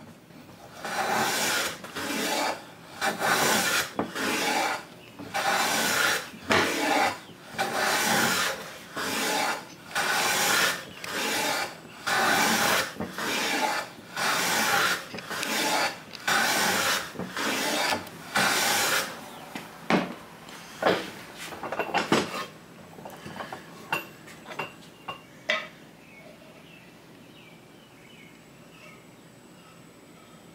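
Metal hand plane being pushed along the edge of a wooden board, shaving it in a steady run of strokes about one a second. The strokes stop about 19 seconds in, and a few sharp taps and clicks follow.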